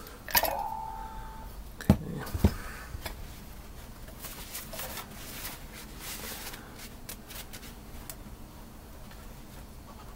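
Cast-iron brake master cylinder and its small internal parts handled on a workbench: a brief tone just after the start, two sharp knocks about two seconds in, then faint clicks and rustling.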